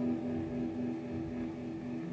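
Electric guitar chord left ringing through a Soviet 'Vibrato' (Вибрато) tremolo pedal, the held notes chopped into steady, even pulses as they slowly fade.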